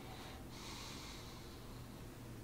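Faint breathing through the nose: a soft sniffing breath that starts about half a second in and fades over a second, over a faint low room hum.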